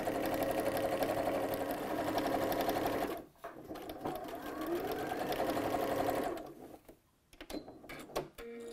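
Janome electronic sewing machine running a straight stitch along a shoulder seam. It sews in two runs of about three seconds each, with a brief stop between them, then stops.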